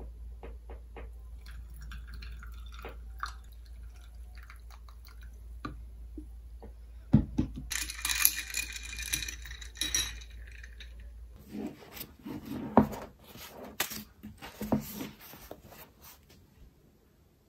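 Iced tea poured from a glass French press into a glass mason jar of ice: soft trickling with small ticks of ice. A sharp clink about seven seconds in, then a metal straw stirring the ice for a couple of seconds of rattling and clinking. Scattered knocks and clicks follow near the end.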